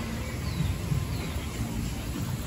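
Outdoor ambience: a steady low rumble with two short, falling bird chirps, about half a second and a little over a second in.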